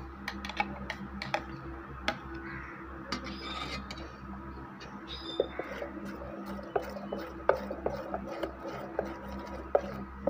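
Metal spoon stirring batter in a steel pot, giving irregular light clinks and taps against the pot, more frequent in the second half, over a steady low hum.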